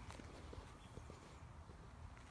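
Near silence: faint outdoor quiet with a few soft, short ticks in the first second.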